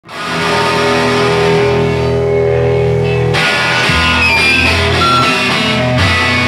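Three-piece rock band playing live, with electric guitar through a Marshall amp and bass holding ringing chords after a quick fade-in; about three and a half seconds in, the sound turns denser as the full band comes in.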